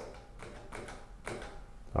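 A few faint clicks and taps from a power wheelchair's joystick controls as they are pressed to select the seat function.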